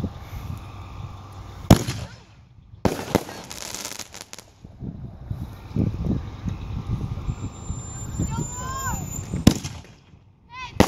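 Consumer fireworks going off. A sharp, loud bang comes about two seconds in, a rapid string of cracks follows around three to four seconds, and another bang comes near the end.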